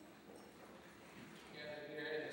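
Faint room sound, then a man's voice beginning to speak near the end.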